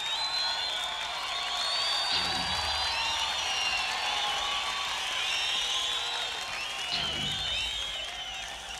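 Live rock keyboard solo: many overlapping swooping, warbling synthesizer tones sweeping up and down in pitch, with two short low rumbles, one about two seconds in and one near the end.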